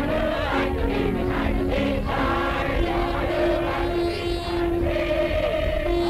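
A crowd of people singing a song together, in held notes.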